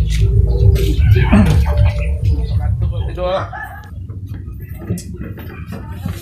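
Chickens clucking, with brief low voices over a loud low rumble; the sound drops noticeably quieter about three and a half seconds in.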